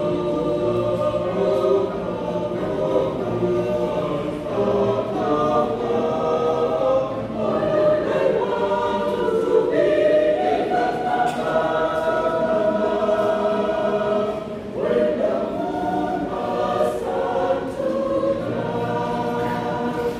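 A choir singing a gospel song, many voices together in harmony.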